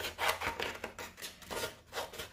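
Cardstock rubbing and scraping across paper in a quick series of short strokes, several a second.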